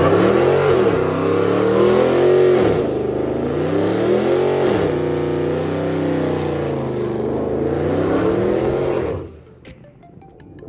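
Muscle car engine revving hard during a burnout, the revs swinging up and down in repeated surges with a haze of tire noise, then dropping away about nine seconds in.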